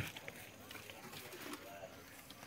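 Faint cooing of a dove in the background: a few soft, low, arching notes, about a second in and again near the end.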